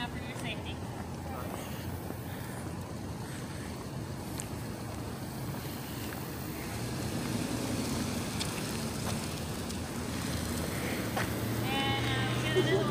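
Open-air urban background noise, steady and fairly quiet, with a low hum that comes in and grows louder in the second half.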